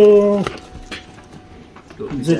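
A drawn-out vocal exclamation held for about half a second at the start, then faint rustling and light clicks as a sneaker is handled and taken out of its bag.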